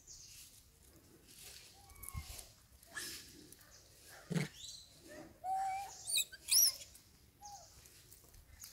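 Long-tailed macaques making scattered short squeaks and soft calls. There is a knock about four seconds in, then a longer call and two sharp high chirps in quick succession, the loudest sounds.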